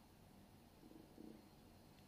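Near silence: room tone, with a faint low murmur about a second in.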